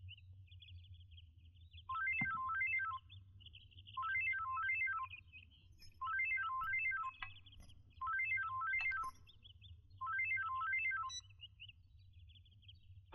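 Mobile phone ringtone: a short electronic melody of stepping notes, about a second long, played five times at even two-second intervals, starting about two seconds in, with faint birdsong underneath.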